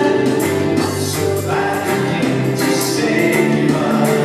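Live contemporary worship band playing a praise song: a woman sings lead over acoustic and electric guitars, bass, keyboards and a drum kit keeping a steady beat.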